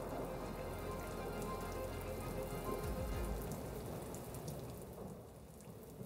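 Steady rain falling, with a low rumble under it for the first half; the rain fades gradually toward the end.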